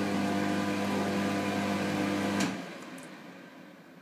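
Wall-mounted electric hand dryer running with a steady motor hum and blowing hiss, then cutting off with a click about two and a half seconds in as the fan winds down. It is running with no hands under its sensor.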